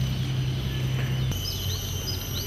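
Outdoor nature ambience: insects droning steadily under a low, steady hum. About halfway through, short, high bird chirps start.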